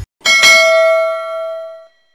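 Notification-bell sound effect: a short click, then a single bell ding that rings on and fades away over about a second and a half.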